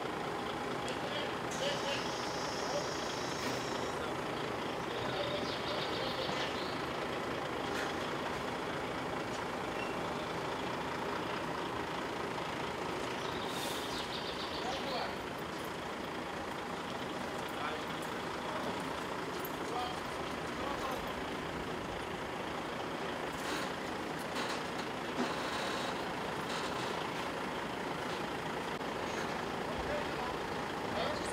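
DAF truck's diesel engine running steadily as it slowly reverses a long semi-trailer, with a few short hisses of air now and then.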